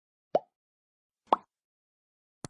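Two short cartoon pop sound effects about a second apart, the second a little louder. They are the kind that accompany an animated like-and-subscribe button.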